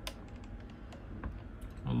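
A few light, scattered clicks over a faint low background hum, with a man's voice starting to speak just before the end.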